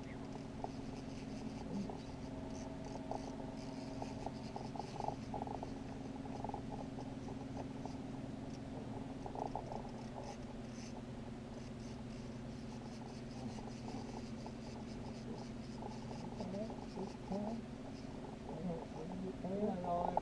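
Small outboard motor on a fishing boat running steadily at idle, a low even hum that shifts slightly in pitch about halfway through. Faint voices come in now and then.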